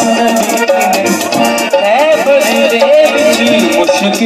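Live qasida music: a gliding melody carried over harmonium, with tabla and a fast rattling percussion rhythm.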